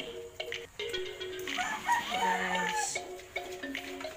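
Rooster crowing: one long call in the middle, with faint steady tones underneath.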